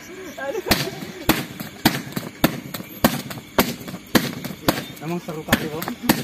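Rapid series of kicks smacking a hand-held kick shield, about ten sharp slaps a little under two per second without a break, as a one-breath kicking drill. Faint voices murmur between the strikes.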